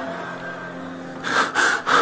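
Sustained background keyboard chord held under a pause, then a man's sharp, loud breaths into a close microphone, several quick gasps in a row, starting a little past a second in.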